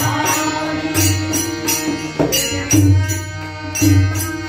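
Devotional bhajan: a harmonium plays held notes while a tabla keeps a steady beat with sharp strikes and deep bass thumps, and a voice sings.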